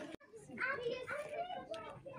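Background chatter of shoppers, children's voices among them, with no clear words. The sound drops out for an instant right at the start.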